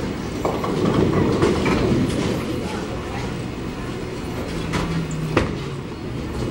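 Low rolling rumble of bowling balls on the lanes and in the ball return, heaviest in the first couple of seconds. A single sharp knock comes just past five seconds in.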